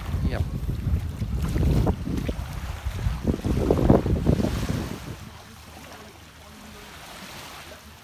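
Wind buffeting the microphone for about the first five seconds, then drops off; after that, small waves wash gently onto a sandy beach.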